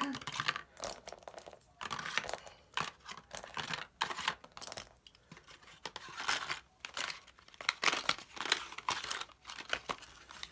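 Paper, cardboard and plastic packaging crinkling and rustling in irregular bursts as a small box and its wrapping are handled and packed.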